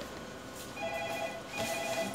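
Two short bursts of a steady electronic ringing tone, like a phone ringing, the second starting about a second and a half in, over faint clicking.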